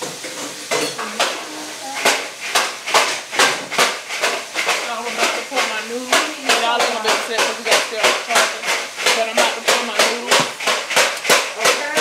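A run of sharp, evenly spaced knocks or claps, about three a second, starting about two seconds in, with a voice sounding among them.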